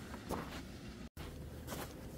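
Faint footsteps, with a few light steps and the sound cutting out completely for a moment about a second in.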